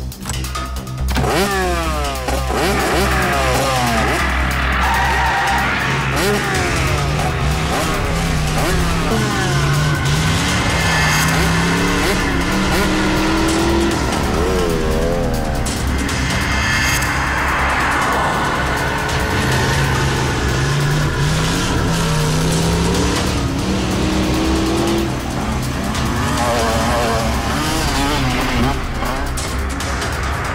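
Tense background music over a car being driven hard, its engine revving up and down repeatedly and its tyres screeching.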